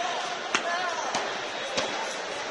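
Three sharp smacks, a little over half a second apart, from a karate sparring bout, over a steady chatter of voices in a sports hall.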